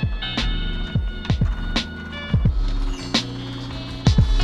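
Background music with a beat: deep drum hits and sharp percussion over sustained chords.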